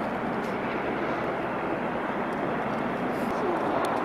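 Electric paramotor's propeller in flight, heard from the ground as a steady, even drone.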